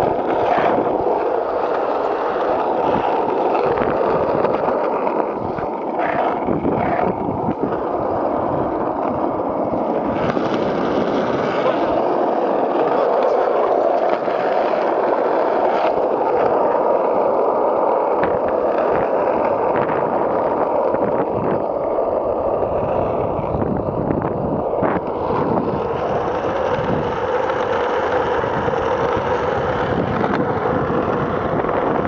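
Skateboard wheels rolling steadily over rough asphalt, a continuous gritty rumble.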